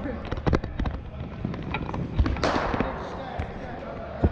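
Cricket balls striking bats, turf and netting in an indoor practice hall: a string of sharp, echoing knocks and cracks, with a louder rushing crash a little past halfway.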